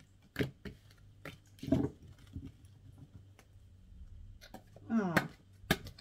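Tarot cards being handled on a table: a few scattered sharp taps and clicks as cards are picked up and set down, with a short murmured vocal sound near the end.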